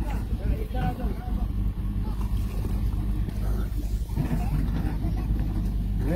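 A steady low motor hum, with faint voices talking over it now and then.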